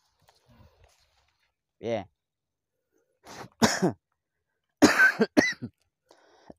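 A man's coughing and throat-clearing: a short grunt about two seconds in, then a harsh voiced cough, and a quick fit of several sharp coughs near the end.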